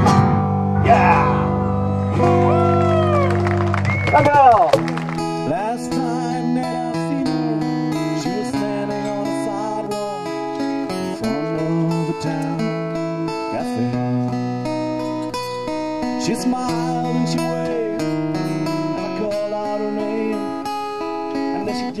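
Live acoustic guitar. For the first four seconds or so a loud chord rings with sliding, bending notes over it. From about five seconds in, a fingerpicked acoustic-guitar passage plays steadily without singing.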